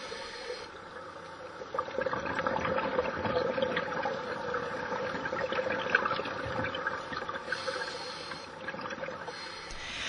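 Underwater bubbling of scuba divers' exhaled air escaping from their regulators: a continuous stream of crackling bubbles.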